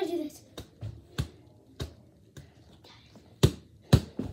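A soccer ball being juggled off the knees: a run of separate, uneven dull thumps as the ball is struck, the last two near the end the loudest.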